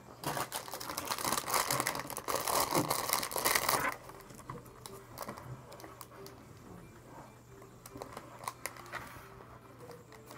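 Plastic packaging crinkling and rustling as items are handled on a table, busiest for the first four seconds, then dropping to quieter handling. A low steady hum runs underneath.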